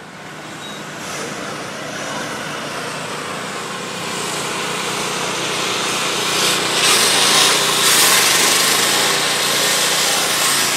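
Small petrol engine of a walk-behind road-works machine running steadily, growing louder through the clip, with a harsh high hiss from the cutting loudest about seven to eight seconds in.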